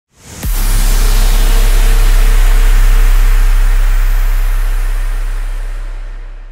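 Cinematic logo-intro sound effect: a brief rising rush into a heavy hit about half a second in, then a deep bass boom with a noisy rumble that slowly fades.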